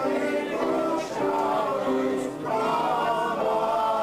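Music: a choir singing, several voices holding notes together and moving from chord to chord.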